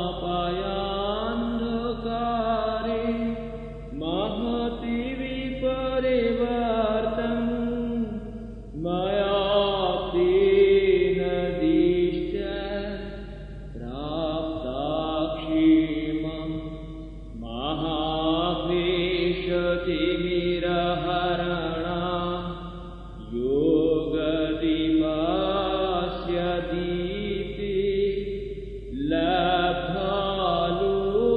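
A man's solo voice chanting a Sanskrit stotra in a melodic recitation. It runs in phrases of about four to six seconds, with a short breath-pause between each.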